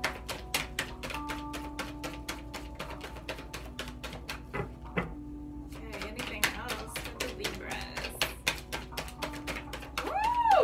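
A deck of oracle cards being shuffled hand over hand: a quick, steady run of small card clicks, about six a second. Soft background music holds steady tones underneath.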